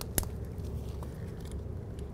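A single sharp click shortly after the start and a fainter one about a second in, over a low steady hum, as a greased slider pin is handled and pushed into its rubber boot on a brake caliper.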